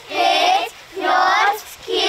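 A group of young children counting aloud in unison, chanting each number in a drawn-out, sing-song shout about once a second: two counts, with a third starting at the end.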